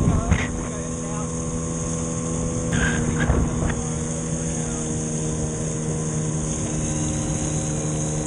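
Small outboard motor running at a steady, unchanging speed, pushing an inflatable boat along, with a steady hum under the rush of water past the hull.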